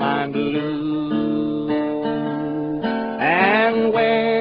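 Country music with strummed acoustic guitar backing and held melody notes, one of them bending upward a little after three seconds in.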